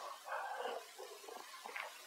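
A dog making a brief, faint sound near the start, then quiet.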